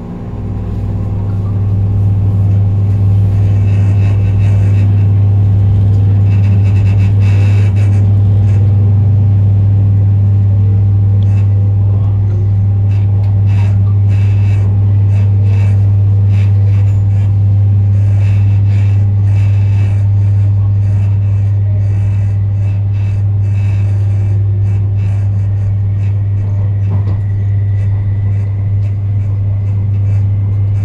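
Metro Cammell EMU traction motors starting up as the train pulls out of a station and gathers speed: a loud steady low hum that comes in at once and swells over the first two seconds, with short clicks of the wheels over the rails as it runs on.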